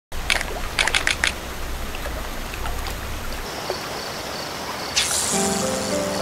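Lakeside water ambience of gently trickling water, with a few sharp clicks in the first second and a high chirping repeating about three times a second from about halfway. A whoosh comes about five seconds in, and music with sustained low chords starts right after it.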